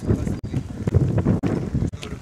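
Wind buffeting the microphone: a low, uneven rumble that swells and dips with the gusts.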